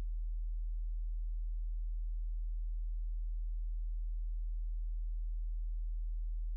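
A steady, deep, low-pitched hum: a single low tone with faint overtones that holds unchanged, with nothing else sounding.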